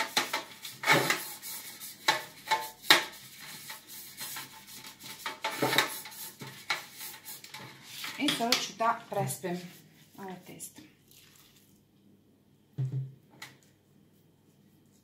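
Pastry brush scraping and tapping inside a metal loaf pan as oil is spread, a run of sharp clicks and knocks against the metal. It thins out after about ten seconds, with a couple of dull knocks near the end as batter starts going into the pan.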